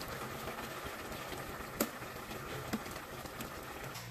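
A pot of vegetable soup simmering with a steady bubbling hiss, with two or three light clicks of a metal spatula against the aluminium pot.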